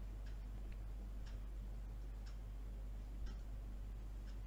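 Faint ticks about once a second over a low steady hum.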